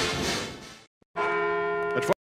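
Music fading out, a moment of silence, then a sustained bell-like chime with several steady tones starting just past the middle, opening a TV commercial.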